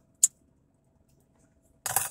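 A cigarette lighter struck once with a single sharp click while a cigarette is lit.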